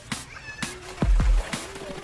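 Electronic club music played in a DJ set: sparse, heavy drum hits with short gliding pitched tones between them, in a stripped-back passage without a bassline.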